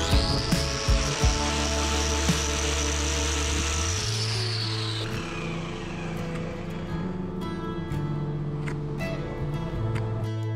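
An angle grinder's disc grinding cow hoof horn for the first four seconds or so, its high whine then falling away as it winds down, over background music.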